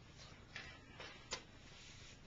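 Quiet room tone with a few faint short clicks or taps, the sharpest about a second and a half in.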